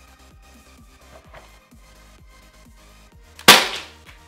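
A single sharp, loud shot from a gas-powered pellet pistol about three and a half seconds in, fading within a fraction of a second.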